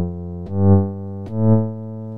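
A sampled synthesizer patch played on a Native Instruments Maschine+, three low notes in turn, each a step higher than the last. Each note swells to a peak and drops back to a lower held level: the amplitude envelope retriggers on every note because the voice setting is no longer legato.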